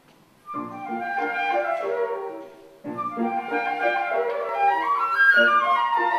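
Two concert flutes playing a duet, starting about half a second in, with quick-moving notes, a brief break just before the three-second mark, and the playing resuming.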